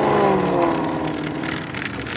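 Chevrolet Camaro ZL1's supercharged 6.2-litre V8 accelerating through a turn. The engine note climbs to a peak just after the start, then falls away and grows quieter as the car pulls off.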